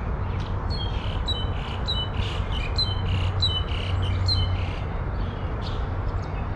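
A bird calling a quick series of short, high two-toned notes, about three a second, stopping after about four seconds, over a steady low rumble.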